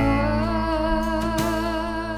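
Live country-rock band playing a slow song: a long, wavering melody note over held organ and bass notes, with a drum hit at the start and another about one and a half seconds in.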